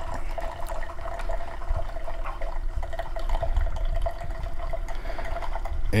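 Keurig Platinum B70 single-serve coffee maker mid-brew: a steady hum from the machine while hot coffee streams into the mug.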